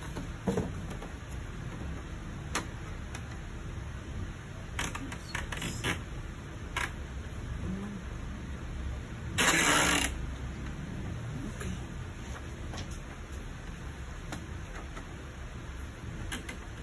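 Sheets of paper being handled and slid into a printer's plastic input tray: scattered light clicks and taps, and one louder rustle of about half a second near the middle, over a steady low hum.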